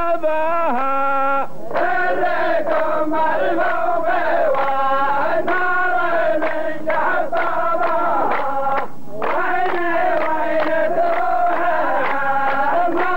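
A row of men chanting a qalta verse together in long, drawn-out sung lines. The chant breaks off briefly about a second and a half in and again near nine seconds.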